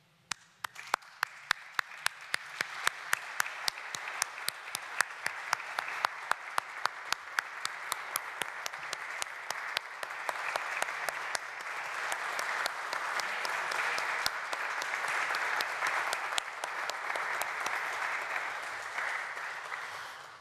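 Audience applauding. Loud, evenly spaced claps from one or two people close by stand out at first, over general clapping that builds to its fullest in the middle and eases off near the end.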